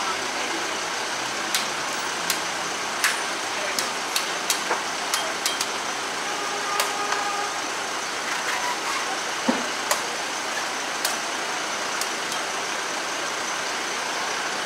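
A machete chopping into coconuts: a string of sharp, irregularly spaced chops, thicker in the first half, over steady street traffic noise.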